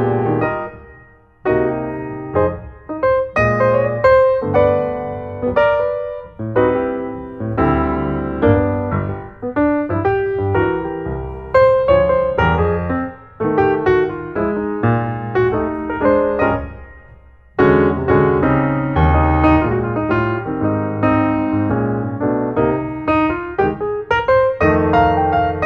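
Background piano music played in phrases, with two brief pauses.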